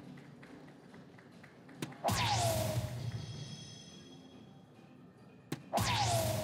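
Two soft-tip darts striking a DARTSLIVE electronic dartboard in the bull, about two seconds in and again near the end. Each hit is a sharp tap followed by the machine's bull-hit sound effect, a swoosh with a falling tone lasting about a second.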